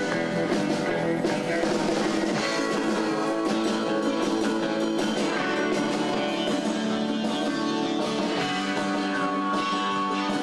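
Live band playing an upbeat surf-rock tune on electric guitars and drum kit, with bongos.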